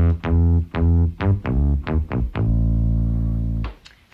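Moog modular synthesizer playing low sawtooth-wave notes through a filter closed by a fast envelope generator, so each note starts bright and quickly dulls, almost like a plucked string. A quick run of short notes, then one longer held note that stops shortly before the end.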